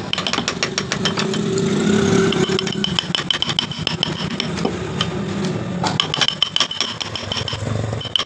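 Hand woodcarving tools working a wooden panel: quick clicking scrapes of a gouge, then a rasp drawn back and forth across the carved edge. A steady low engine-like hum runs underneath.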